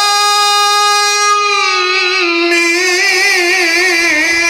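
A man's voice holding one long unbroken note in Egyptian-style Quran recitation (tajweed). The pitch stays level, dips slightly a little past halfway, then wavers in melodic ornament near the end.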